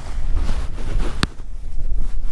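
Wind buffeting the microphone with a low, steady rumble, and one sharp click about a second and a quarter in.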